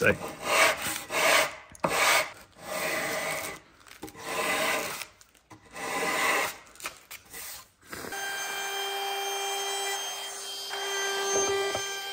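Sandpaper on a hand-held block rubbed back and forth along the wooden edge of a door stile's diminished shoulder, working in a round-over by hand: about six rubbing strokes with short pauses between them. About two-thirds of the way through the rubbing stops and a steady pitched hum with overtones takes over.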